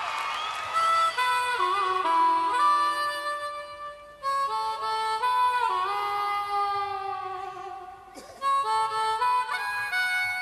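Harmonica playing a slow, melodic solo intro in three phrases with short breaks between them, sliding into some notes.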